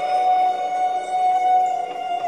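A man humming one long, steady high note of the song's melody.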